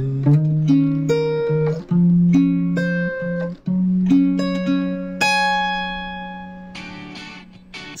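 Acoustic guitar with a capo, fingerpicked: single notes of arpeggiated chords plucked one after another. About five seconds in, a final chord rings out and slowly fades.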